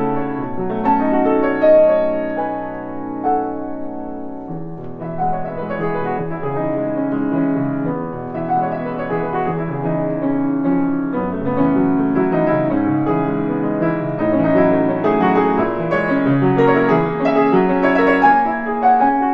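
Grand piano played solo, a classical piece in a continuous run of overlapping notes.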